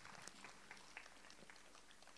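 Near silence: faint open-air background with a few soft, scattered clicks.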